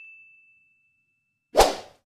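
Sound effects of an animated like-and-subscribe graphic. A bright bell-like ding rings out and fades over the first half second, then a single short swoosh comes about one and a half seconds in.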